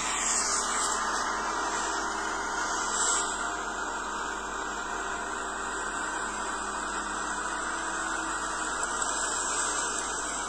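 Steady rushing noise from an outdoor recording, cutting in abruptly, with no clear engine note or distinct events.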